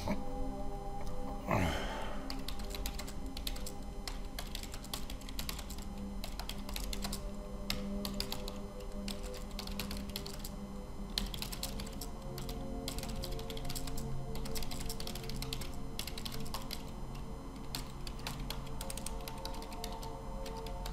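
Computer keyboard typing and clicking in irregular runs, over quiet background music with held tones. About a second and a half in, a short falling swoosh.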